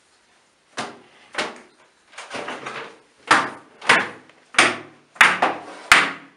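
A bathtub being struck again and again with a hand-held object, about eight sharp hits with short ringing tails, roughly one every two-thirds of a second and getting louder toward the end: someone swatting at a bug inside the tub.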